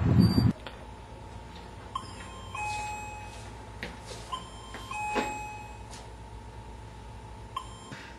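Electronic door-entry chime sounding a two-note ding-dong, high then low, twice, with a third high note starting near the end. A few light knocks come between the chimes, and a burst of outdoor noise cuts off about half a second in.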